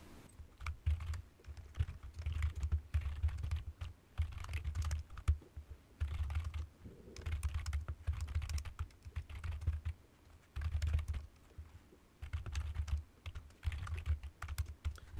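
Typing on a computer keyboard: bursts of quick keystrokes with short pauses between them.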